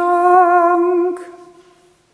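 A solo voice singing unaccompanied holds the long final note of a chanted phrase. The note breaks off a little past a second in and dies away in the church's echo.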